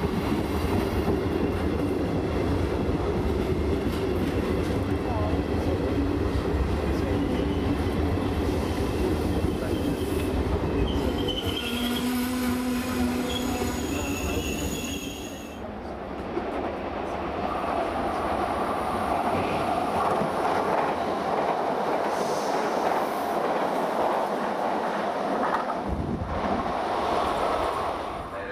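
FS Class E.464 electric locomotive and its coaches passing slowly along the platform, with a loud steady low rumble and hum. Wheel squeal comes in about halfway through. After that the lighter sound of the coaches rolling by takes over, with a higher grinding squeal of wheels.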